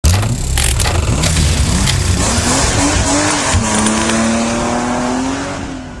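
Racing-car sound effects: an engine note that rises and falls and then holds, with tyre squeal and several sharp hits in the first seconds, fading out near the end.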